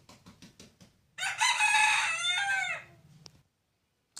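A rooster crowing once, starting about a second in and lasting under two seconds, its pitch dropping at the end of the call.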